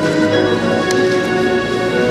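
Live church band music: sustained keyboard chords held steadily.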